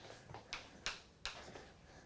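Chalk on a blackboard: several faint, short taps and scrapes as a piece of chalk is written with.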